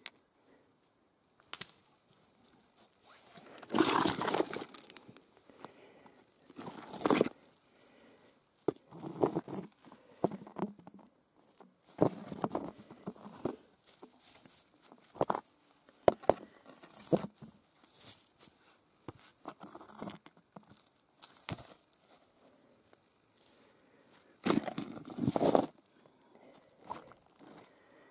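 Gloved hands handling and shifting chunks of quartz: irregular scrapes and crunches of rock against rock and dry leaf litter, the loudest about four seconds in and again near the end.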